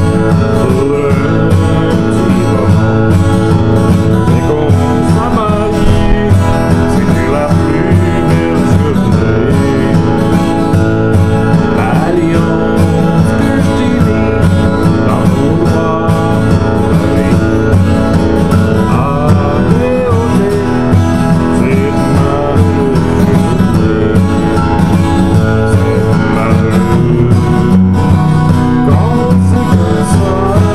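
Martin acoustic guitar, freshly strung, played steadily as the accompaniment to a man singing a Cajun French song.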